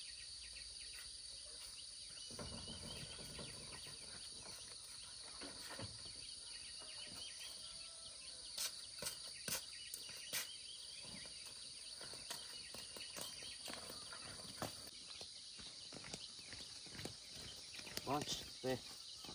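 Insects chirring steadily at a high pitch, with a few sharp knocks about halfway through.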